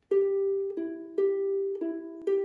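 Ukulele picked slowly, one note at a time: four single notes that alternate between a higher and a lower pitch, each left ringing into the next. It is the picking pattern that goes with the C chord.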